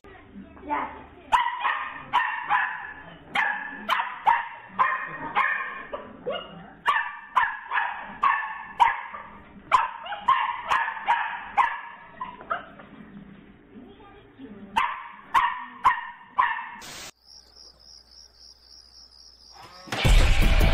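Small dog barking over and over, about two barks a second, in runs with short pauses, stopping about seventeen seconds in.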